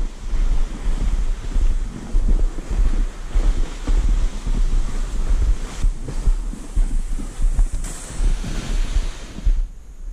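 Wind buffeting the camera microphone in a loud, uneven low rumble, over a steady hiss of footsteps in snow and a towed plastic sled sliding across the snow.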